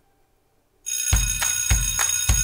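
Near silence, then, just under a second in, intro music starts suddenly: a steady drum beat with bright, bell-like chiming tones.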